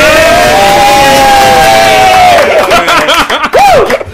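A group of men yelling and whooping together in celebration and laughter. One voice holds a long shout for about two and a half seconds, then a shorter whoop rises and falls near the end.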